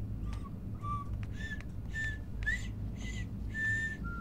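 A person whistling a short run of about seven clipped notes, roughly two a second, the first two low and the rest stepping higher, one of them sliding upward.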